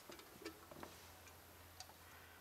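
Near silence: a faint low hum with a few small, faint ticks.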